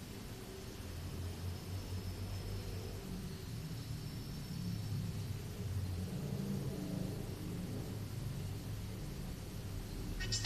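Faint low rumble and hum that swells a little a few times.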